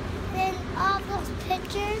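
A young child's high-pitched voice in short, sing-song phrases without clear words.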